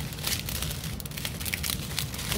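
Thin clear plastic bags of diamond painting drills crinkling as they are handled, in irregular crackles, with the loose resin drills rattling inside.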